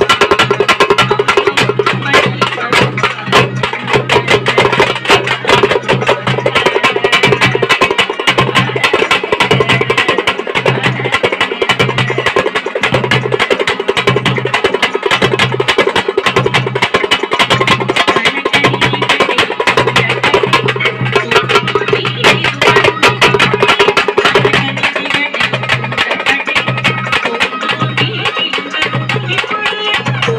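Tamil thappattam folk drum ensemble: thappu (parai) frame drums struck with sticks, played with a large bass drum in a loud, fast, continuous rhythm.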